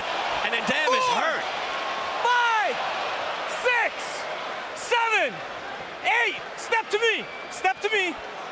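A boxing referee shouting a knockdown count over arena crowd noise, one loud number about every second and a quarter.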